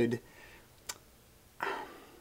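A man's voice finishing a word, then near quiet with a single sharp click a second in and a short breath near the end.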